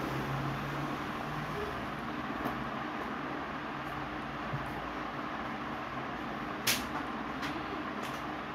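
Steady rushing background noise with a low hum underneath, and one sharp click a little over three-quarters of the way through.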